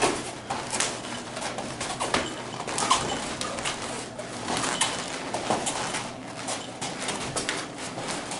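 Light-contact kung fu sparring on padded floor mats: irregular thuds and scuffs of feet and light kicks and blocks, the sharpest at the start and just before three seconds in.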